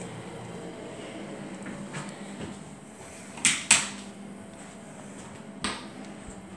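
A few sharp knocks against a quiet small-room background: two close together about three and a half seconds in, and one more near the end.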